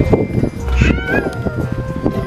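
A short, high-pitched squeal, a child's cry or a playground squeak, about a second in. Around it come knocks and rubbing from the camera being handled against the metal bars of a playground climbing structure, with children's voices in the background.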